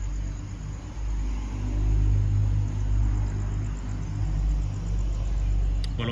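A motor vehicle's engine rumbling low and steady, getting louder about a second in.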